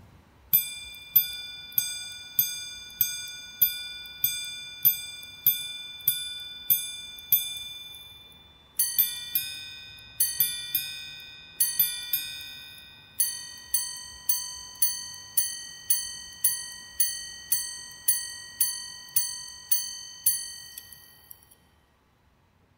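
A Patek Philippe minute-repeater pocket watch chiming the time on its gongs. It strikes about twelve even hour strikes on the lower gong, then about three quick two-note quarter strikes, then about fourteen higher-pitched minute strikes. Each strike rings and fades before the next.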